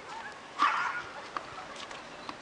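One short, bark-like call a little over half a second in, the loudest sound, followed by a few faint clicks.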